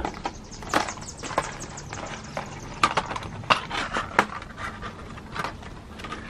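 Irregular light clicks and knocks of small objects being handled and shifted about, as in rummaging through craft supplies.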